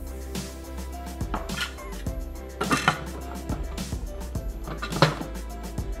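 Background music with sustained instrumental tones and a few light clicks.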